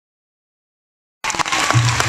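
Silence, then about a second in, audience applause starts abruptly: many hand claps over a haze of noise, with a low steady hum joining shortly after.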